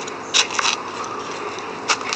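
Soil and dry leaves being scraped and handled by hand, with a few short sharp crackles, one loud just after the start and another near the end.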